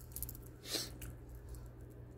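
Quiet handling of wire rings and jewelry on a table: a few faint clicks and a brief soft rustle about three-quarters of a second in, over a low steady hum.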